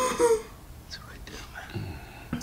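A man stifling laughter: two short breathy, squeaky bursts near the start, then faint breathing and small sounds held back.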